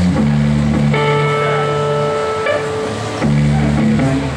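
Live band playing a song on electric guitars, bass and drums, with one long held note from about a second in until halfway through.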